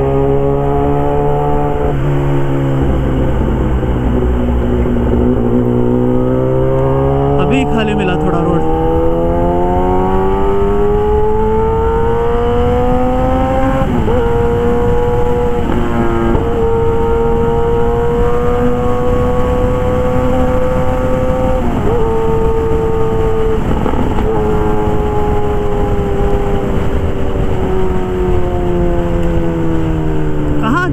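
Kawasaki ZX-10R's inline-four engine through an SC Project CRT aftermarket exhaust, under way on the road. The engine note climbs slowly for about twelve seconds, holds with a few brief breaks, then sinks gradually near the end as the bike eases off.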